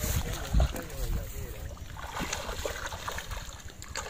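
A hooked silver carp splashing at the water's surface as it is played in close to the bank, over a steady low wind rumble on the microphone.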